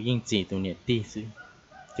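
Only speech: a man talking in short, clipped syllables.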